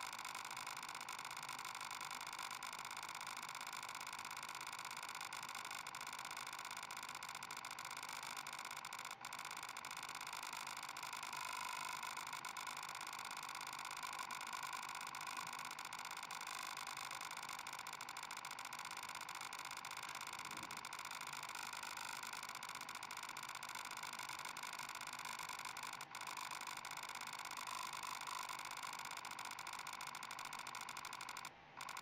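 A steady whirring hiss, like a small cooling fan, broken by two very short dropouts about nine seconds in and a few seconds before the end.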